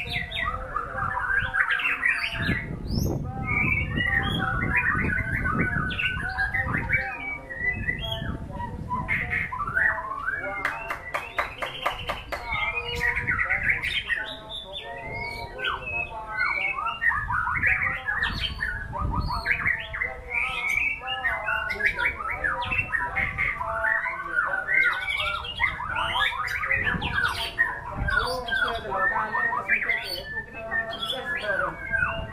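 White-rumped shama (murai batu) singing a long, varied song of quick whistles, chirps and trills without pause, with a fast stuttering run of repeated notes a little before the middle.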